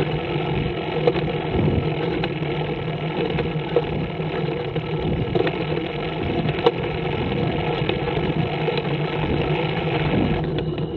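Scorpion trike's engine running steadily at cruising speed, with a few short sharp knocks.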